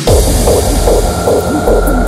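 Raw hardstyle beat cutting in: a heavy distorted kick and deep bass pounding at a steady rhythm under a sustained high synth tone, with hi-hat ticks joining near the end.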